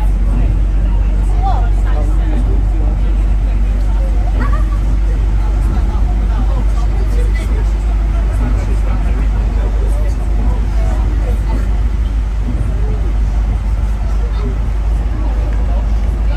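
Steady low rumble of a vehicle's engine and tyres on a wet road, heard from inside the vehicle, with indistinct chatter of voices in the background.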